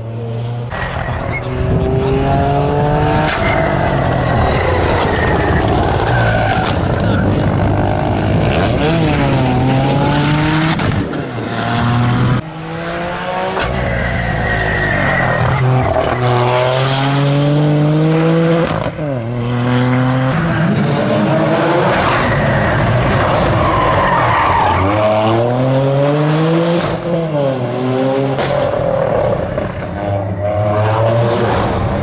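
Toyota GR Yaris's turbocharged three-cylinder engine revving hard through the gears, its pitch climbing and dropping repeatedly as the car is thrown through tight corners, with tyres squealing and skidding in places.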